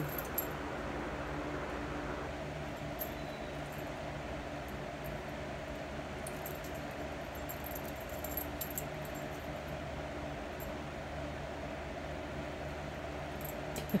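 Steady rain falling around a covered porch, with a low steady hum underneath. Faint jingling of dog collar tags comes and goes as two small dogs play-wrestle on a blanket, most of it in the middle of the stretch.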